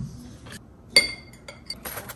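A single sharp clink of metal against a glass jam jar about a second in, ringing briefly, with a few lighter clicks and taps of the knife and jar around it.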